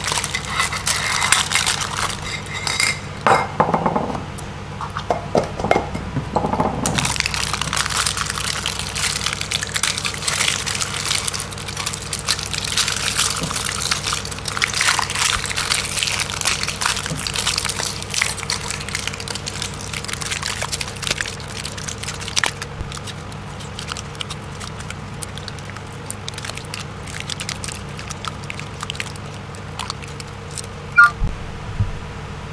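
Aluminium foil crinkling and tearing as it is peeled off a shell of set hot glue: a dense, irregular run of small crackles, heavier in the first several seconds, over a steady low hum.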